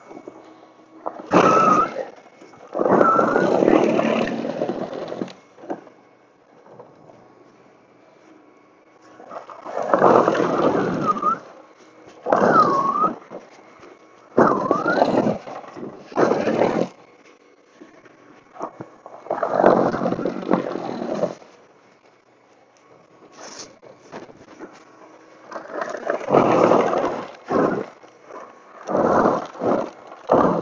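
Toro Power Clear e21 60-volt cordless snow blower churning and throwing heavy, wet snow in repeated bursts of one to three seconds, with quieter gaps between them. A brief whine bends in pitch at several of the bursts.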